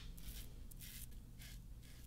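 Double-edge safety razor (Edwin Jagger DE89 with a Dorco ST301 blade) scraping through about a week's stubble under shave lather, in faint short strokes about two a second.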